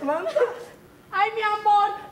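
A person's voice: a few short, quick cries at the start, then one long, high, drawn-out cry held for about a second in the second half.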